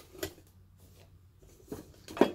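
Quiet room with faint handling of items inside a metal bush pot, ending in a single light knock about three-quarters of the way through.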